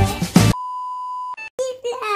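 Upbeat intro music that cuts off abruptly about half a second in, followed by a single steady electronic beep lasting under a second. After a brief silence a voice starts near the end.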